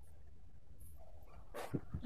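Quiet room tone with a steady low hum, and a faint short sound about a second and three quarters in.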